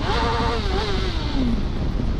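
A man's voice calling out in one long, falling shout, over steady wind rush and a motorcycle engine running underneath.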